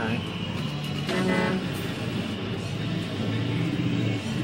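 Electronic arcade music and tones, with a horn-like note about a second in over a steady hum.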